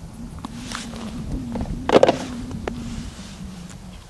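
Ice skimmer scooping slush out of an ice-fishing hole: soft scraping and ticking, with one louder knock about two seconds in. A steady low hum runs underneath.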